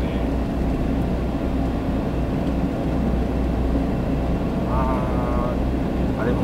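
Steady road and engine noise of a car driving at cruising speed, heard from inside the cabin.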